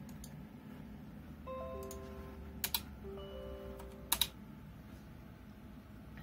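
Computer mouse clicks, including two quick double-clicks about two and a half and four seconds in. Faint held electronic tones sound between them.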